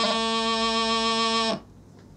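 Bagpipe practice chanter playing piobaireachd: a quick grace-note flick right at the start drops into a long held low note. The note stops suddenly about a second and a half in, leaving only a faint hush.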